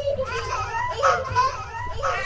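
High-pitched children's voices, babbling without clear words, laid over the picture as an eerie soundtrack.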